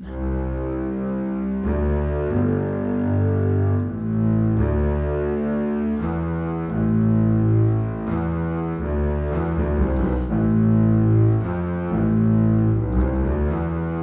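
Sampled orchestral bass strings from Reason 11's built-in orchestral sound pack, played on a keyboard: a slow line of held, bowed low notes, changing every second or two.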